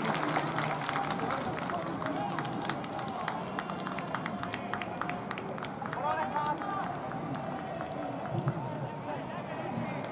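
Ballpark crowd chatter, with scattered sharp claps and a voice calling out about six seconds in.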